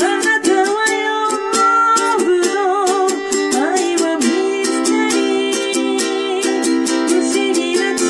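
Ukulele strummed in steady chords in D minor, with a woman's voice singing a slow, wavering melody over it for the first few seconds and briefly again near the end.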